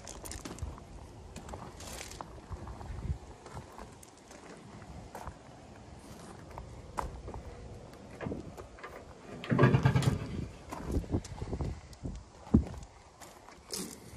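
Footsteps on gravel and handling noise on a skid steer loader's body panels. A little past halfway there is a loud clatter as the rear engine-compartment door is unlatched and swung open, followed by a single sharp knock.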